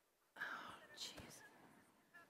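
A brief breathy whisper into the microphone, without voiced tone, starting about a third of a second in and fading out over about a second.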